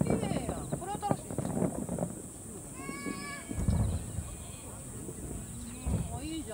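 Spectators' voices talking and calling out while distant fireworks go off, with a dull low boom about halfway through, just after a long drawn-out voice.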